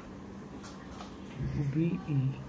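Quiet room tone with faint scratching of a ballpoint pen writing on paper, then a man's voice drawing out a syllable near the end.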